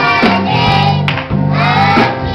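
A small group of young children singing a gospel song together into microphones, with a band accompanying on steady low held notes.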